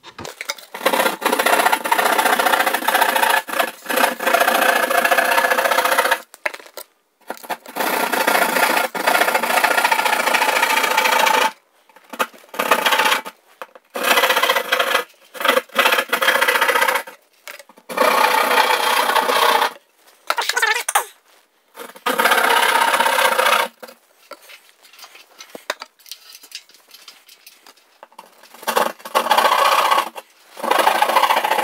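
Hand jab saw sawing a round hole through a drywall ceiling: rasping back-and-forth strokes in runs of a few seconds, broken by short pauses, fainter for a few seconds near the end.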